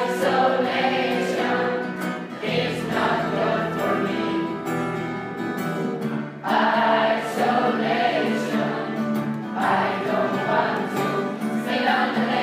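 Large mixed choir of teenage students singing together with instrumental accompaniment, in sung phrases a few seconds long; a low bass part joins about two and a half seconds in.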